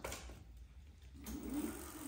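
E-bike rear hub motor spinning the lifted back wheel under pedal assist: a faint whir that comes in about a second in and builds slightly. The cadence sensor is engaging the motor through the newly replaced controller.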